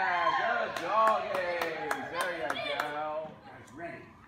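Excited high-pitched calling from a handler cheering on a dog, mixed with a quick string of hand claps at about three to four a second that stops a little before the end.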